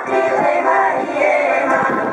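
Bulgarian women's folk singing group singing together in traditional style, accompanied by an accordion.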